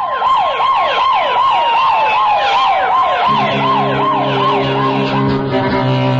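Emergency-vehicle siren sound effect: a quick falling whoop repeating about three times a second over a steady tone that slowly drops in pitch, fading out about five seconds in. Low bowed-string music comes in about three seconds in.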